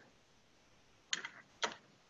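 Two short clicks about half a second apart, as small letterpress woodcut printing blocks are set down and knocked against each other on a tabletop.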